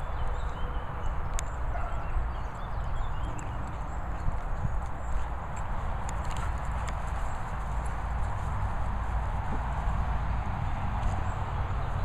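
Outdoor rumble on the camera microphone, a steady low buffeting noise, with a few short sharp clicks.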